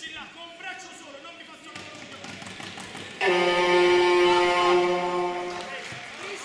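Shouting voices, then about three seconds in a loud, steady horn note sounds for about two and a half seconds and fades out.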